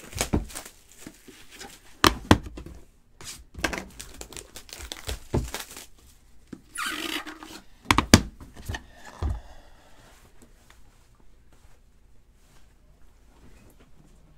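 Plastic wrap crinkling and tearing and cardboard packaging being handled as a trading-card box is opened, with several sharp knocks, the loudest about two and eight seconds in. It goes quieter for the last few seconds.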